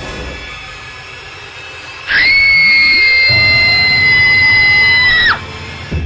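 A low, eerie music drone, then a sudden loud, piercing high-pitched scream held at a steady pitch for about three seconds before it cuts off abruptly.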